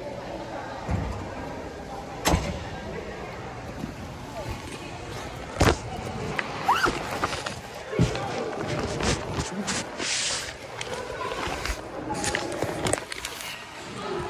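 Handling noise from a delivery bag being carried and moved, with rustling and three sharp knocks about two, five and a half and eight seconds in.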